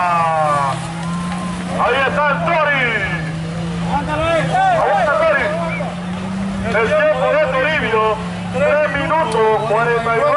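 A man's voice speaking loudly in stretches through a microphone, over a steady, unbroken engine hum.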